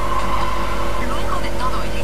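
A voice speaking over a steady low hum.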